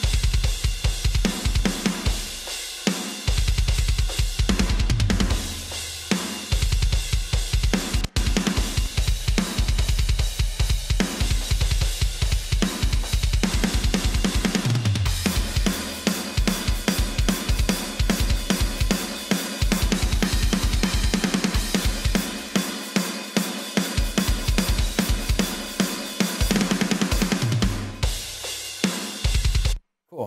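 Playback of a mixed metal drum kit recording: fast double-kick bass drum runs under snare hits, cymbals and hi-hat, processed through a parallel drum bus. The playback cuts off suddenly at the very end.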